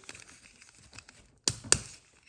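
Fingers handling a small plastic Vulture Droid toy with a faint rustle, then two sharp plastic clicks about a quarter second apart near the end as its hinged wing sections are worked open.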